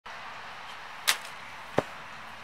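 Two sharp hits on a soccer ball about three-quarters of a second apart; the second, deeper one is the kick that sends the ball flying low over the grass. A steady outdoor hiss underneath.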